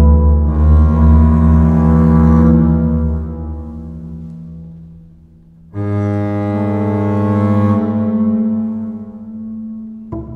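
Solo double bass: low notes ring and fade away over a few seconds, then about six seconds in a new chord sounds suddenly, holds briefly and fades out again.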